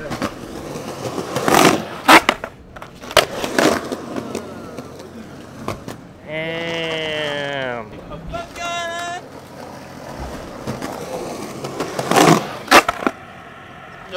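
Skateboard wheels rolling on rough concrete, with sharp clacks of the board popping and landing, a cluster early on and two more near the end. In the middle a person gives one long yell that falls in pitch, followed by a shorter high call.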